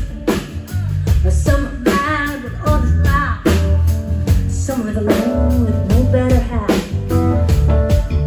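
Live band playing: a woman singing lead over electric guitar and a drum kit keeping a steady beat.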